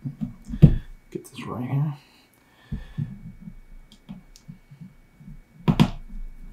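Hands handling components and wires on a plastic solderless breadboard: scattered knocks and clicks, strongest about half a second in, with a sharp double knock near the end.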